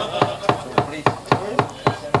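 A wayang kulit dalang's steady rapid knocking (dodogan), a wooden mallet rapping the puppet chest about four times a second, even and unbroken.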